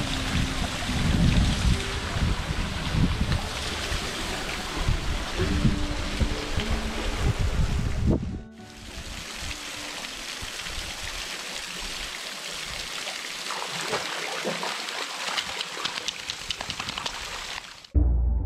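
Small waterfall splashing steadily into a rock pool, an even rush of falling water, with an uneven low rumble under it in the first half. About halfway through the sound drops suddenly at a cut, and the falling water goes on quieter and thinner, without the low rumble.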